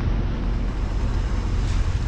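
A car driving, its engine and road noise a steady low rumble, with wind buffeting the microphone.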